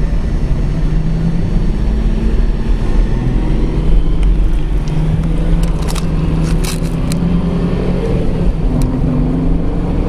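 Car engine and road noise heard from inside the cabin as the car pulls away and accelerates, the engine pitch climbing in the second half. A few sharp clicks come around the middle.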